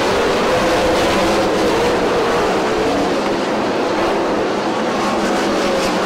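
A pack of 410 winged sprint cars' methanol V8 engines running at racing speed on a dirt oval: a loud, steady, dense engine sound whose pitch wavers up and down as the cars go through the turns and along the straight.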